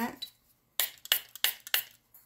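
Trigger spray bottle spritzing 99% isopropyl alcohol over freshly poured resin: four quick hissing squirts about a third of a second apart.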